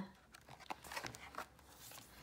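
Faint rustle and a few light scrapes and taps of a picture book's page being turned by hand.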